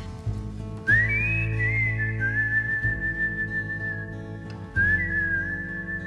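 A whistled melody line: a pure high tone that slides up into long held notes, with a new phrase starting near the five-second mark, over acoustic guitar accompaniment.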